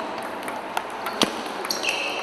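Table tennis ball clicking off bats and table during a rally, a few sharp knocks roughly half a second apart, echoing in a sports hall.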